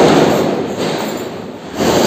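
Two loud booms, one at the start and one near the end, each trailing off in a long rumbling fade.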